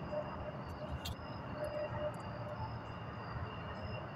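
A pause in speech: steady low background rumble and hiss, with a faint click about a second in.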